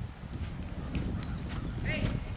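Dull, low hoofbeats of a three-year-old reining stallion moving on soft ground, with a short high-pitched chirp near the end.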